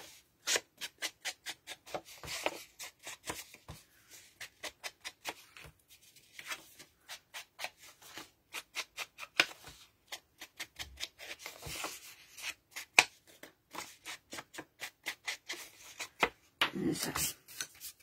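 Pieces of paper and cardstock being handled: many small irregular taps and rustles as sheets are picked up, flexed and laid down on a table.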